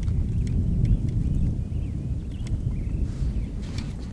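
Low, uneven rumble of wind buffeting the camera microphone, with a few faint high chirps.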